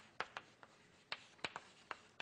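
Chalk writing on a blackboard: a string of short, irregular taps and scrapes as the chalk strikes and drags across the slate, faint in a quiet room.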